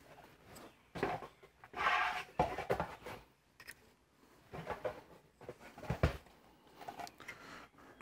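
Scattered light clicks, taps and rustles of plastic car interior trim pieces being handled, with one sharper click about six seconds in.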